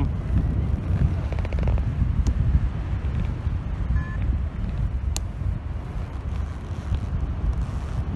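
Wind buffeting the microphone in flight: a steady low rumble, with a couple of faint clicks and a brief faint beep about halfway through.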